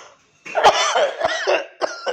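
A man coughing into his fist: a loud fit starting about half a second in, followed by a few shorter coughs.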